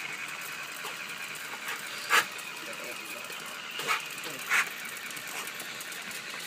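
Pit bull barking a few short times: one bark about two seconds in and two more close together around four seconds.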